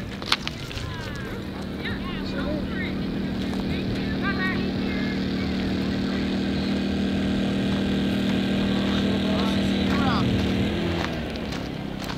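An engine running at a steady pitch, slowly getting louder, then cutting off abruptly near the end, with distant voices.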